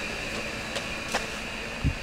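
Steady background hum and hiss, with two faint clicks about a second in.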